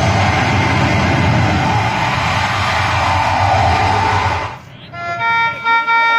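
Loud live stage music through a PA: a dense, clashing percussion-heavy wash over a pulsing beat, which cuts off about four and a half seconds in. A melody of clean, held notes on an electronic keyboard then starts.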